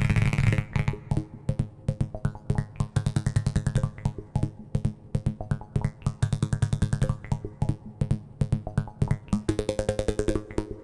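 Eurorack modular synthesizer playing an envelope-follower feedback patch: rapid, uneven clicking pulses over a low buzzing pitched tone, with a higher tone coming in near the end.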